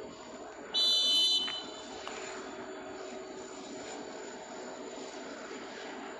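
A single short, shrill whistle blast lasting under a second, almost certainly the referee's whistle marking the start of a minute's silence. A steady low background hum follows.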